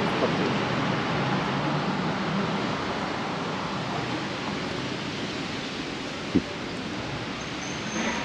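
Street traffic noise: a steady wash of vehicle sound that slowly fades, with one brief blip about six seconds in.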